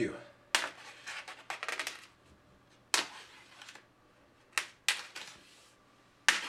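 Plastic wrap film over a meat tray being pierced and slit with a knife, crackling and snapping in sharp bursts: one near the start, a quick cluster between one and two seconds in, then single snaps near three and five seconds in.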